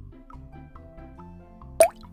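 Soft background music for children, with a light pulsing bass and faint melody notes. Near the end a short rising "plop" sound effect, the loudest sound, marks the change to the next picture.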